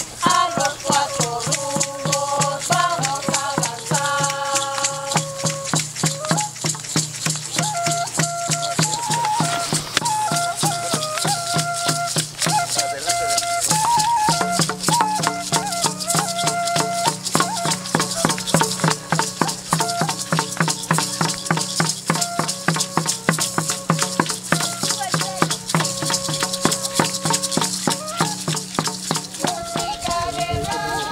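Music of rattles shaken in a fast, steady rhythm, with a melody of held notes over a low pulsing drone that grows stronger about halfway through.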